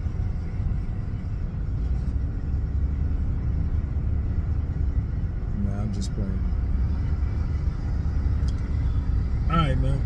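Steady low rumble of road and engine noise inside the cabin of a moving 2012 Honda Civic. A short vocal sound from a man comes about six seconds in, and speech starts again just before the end.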